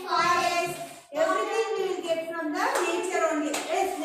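Voices singing a short, steady-pitched classroom song, with a few hand claps in the second half.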